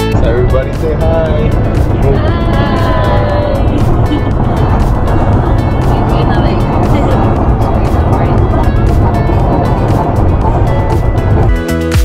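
Steady road and engine noise inside a moving car's cabin, with passengers' voices in the first few seconds.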